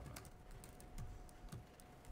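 Faint, irregular clicking of typing on a laptop keyboard, over a thin steady tone.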